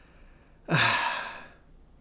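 A man's single loud breathy exhale, like a sigh, starting sharply a little under a second in and fading away over about a second.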